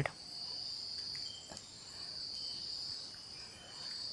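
Insects chirping: a high-pitched trill that comes in pulses of about a second with short gaps, over fainter, higher chirps repeating evenly.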